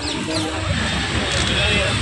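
City street ambience: a steady rumble of road traffic with people talking faintly in the background.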